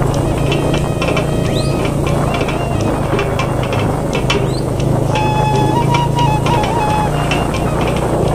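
Background music: a steady low drone under a simple melody of held notes that step up and down.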